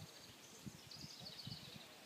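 Faint outdoor ambience: a high, rapid trill in the background, strongest in the middle, with a few soft low thumps.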